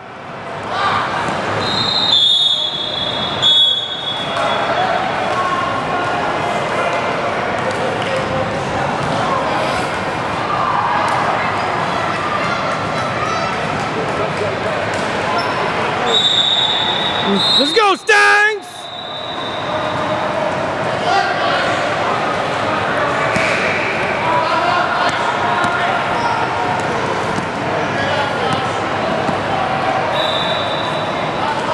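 Basketball game noise in a gym hall: a ball bouncing on the court amid players' and spectators' voices. A high, steady referee's whistle sounds twice, each blast lasting about two seconds, once near the start and once about halfway through, when play stops.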